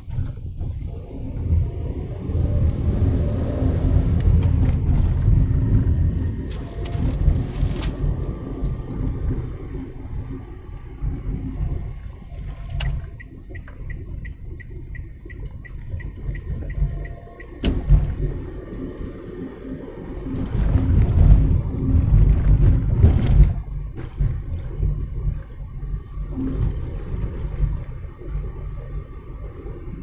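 Road and engine noise heard from inside a moving car: a low rumble that swells and eases as the car drives on, with a few knocks and, about halfway through, a short run of faint, evenly spaced ticks.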